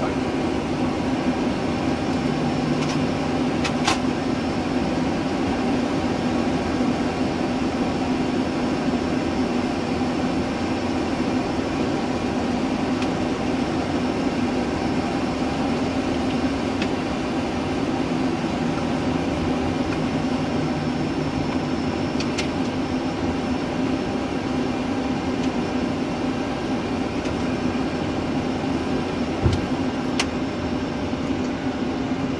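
Steady drone inside a Boeing 737 cockpit on the ground, the aircraft's running systems and air conditioning humming evenly. A few light clicks come through, and there is a short low thump near the end.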